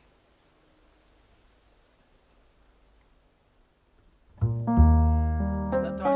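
Near silence for about four seconds, then a piano and a double bass begin playing together: a strong low bass note under piano chords, slowly dying away.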